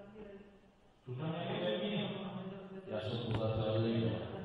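Indistinct speech: a man's voice talking, with a short pause in the first second before he goes on.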